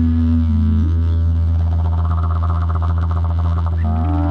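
Didgeridoo holding a steady low drone with a long, low Native American style flute sustaining a note above it. The flute steps down briefly and then drops out about halfway, while the didgeridoo's sound takes on a quick pulsing rhythm. The flute glides back in near the end.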